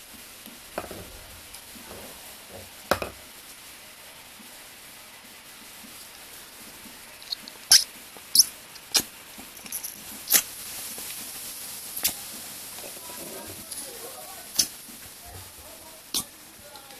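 Scattered sharp clicks and taps from the metal and plastic parts of a homemade blow-off valve being handled and assembled by hand, with a quick cluster of louder clicks about halfway through.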